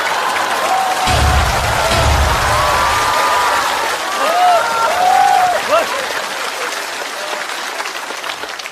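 Studio audience laughing and applauding loudly after a stand-up punchline, with laughing and whooping voices in the mix. A low rumble sits under it from about a second in for two seconds, and the noise fades gradually toward the end.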